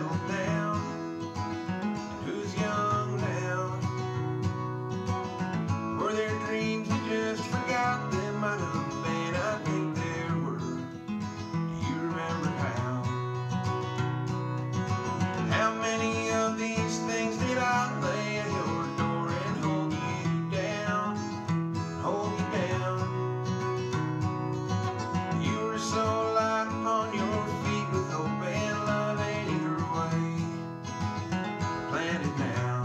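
Steel-string dreadnought acoustic guitar strummed in steady chords, with a man singing over it.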